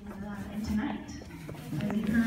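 Indistinct talking, with a steady low hum underneath and a few small clicks near the end.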